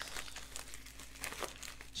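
Crinkling of a plastic mailer envelope being handled as a hand reaches into it, a run of small irregular rustles and crackles.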